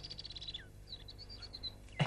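Faint birdsong: a fast run of high chirps ending in a falling note about half a second in, then a few more short chirps.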